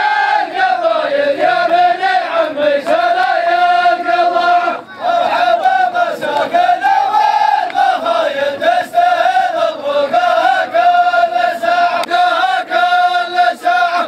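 A group of men chanting in unison, a sung tribal chant with long held, wavering notes, breaking off briefly about five seconds in before resuming.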